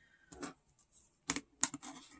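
A few quiet clicks and taps of metal eyeshadow pans against a magnetic Z palette, with a telescoping magnetic pickup tool touching and lifting a pan, and a short cluster of clicks near the end.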